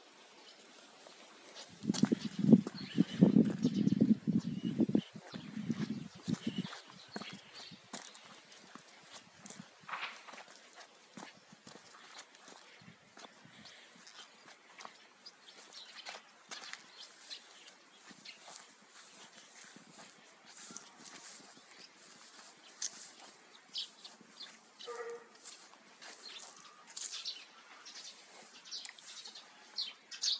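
A dog making a run of loud, low vocal sounds from about two to six seconds in. After that there are only faint, scattered high chirps and clicks.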